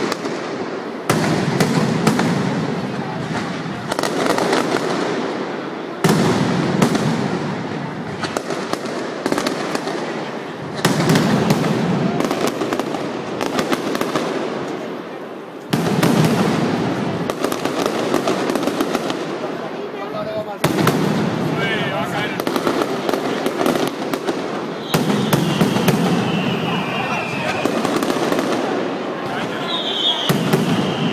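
Mascletà: a dense, continuous barrage of firecrackers going off in rapid succession, surging in a fresh wave every few seconds. Near the end a high whistle falls in pitch over the bangs.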